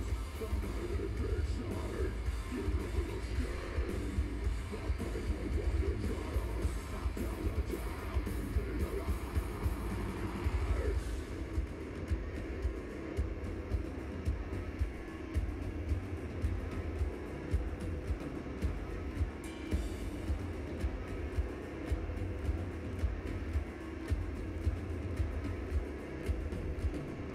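Live metal band playing, heard from within the crowd, with a heavy, rumbling low end and a steady drum beat. After about eleven seconds the treble drops away and the sound thins out.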